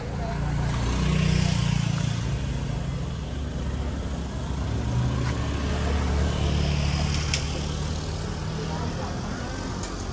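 A nearby motor vehicle's engine running at low revs, a steady low engine sound with a small change in pitch about a second in.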